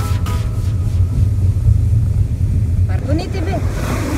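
Steady low rumble of a car's engine and tyres heard inside the cabin while driving, with voices starting about three seconds in.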